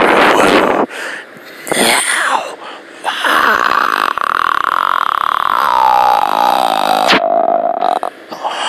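A person making mouth noises into the microphone: a short noisy blowing burst, a second shorter one, then a long held note that slowly falls in pitch and cuts off near the end.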